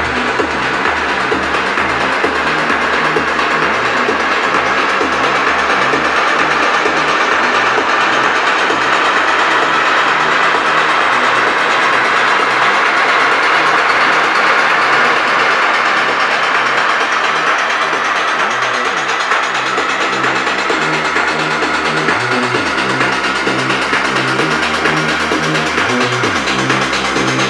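Techno track in a DJ mix, in a breakdown. The pounding kick and bassline thin out about two seconds in, a rising noise sweep builds over sustained synths, and the full kick pattern comes back about five seconds before the end.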